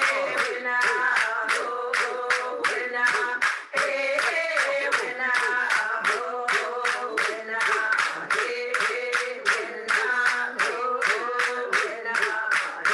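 Recorded traditional song for young girls and young women from a Native community: voices singing over a steady percussive beat of about three strokes a second.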